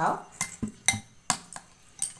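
A spoon clinking against a glass mixing bowl while stirring a thick spice paste: a handful of sharp, separate clinks.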